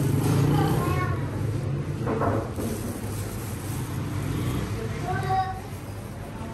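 Busy roadside ambience: a steady low rumble of traffic, with people talking briefly now and then.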